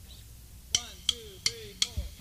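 A four-beat count-in in the studio: four sharp clicks about a third of a second apart, each with a short falling tone, starting about three-quarters of a second in.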